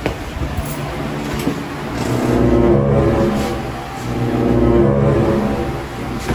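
A motor vehicle's engine running, a steady low hum that swells louder twice.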